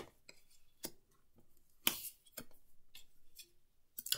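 Paper playing cards being drawn from a deck and laid down on a table: a few short, soft taps and card snaps, the clearest a little under two seconds in, with faint rustling between.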